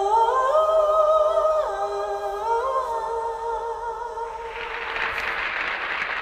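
A woman humming a slow wordless melody in a high voice, long held notes with a few steps up and down in pitch. About four seconds in the humming fades and applause starts.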